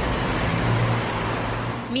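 Road traffic noise at a street scene: a steady haze of sound with a low, even engine hum underneath.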